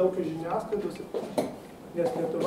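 A man speaking, with a single short sharp click about one and a half seconds in.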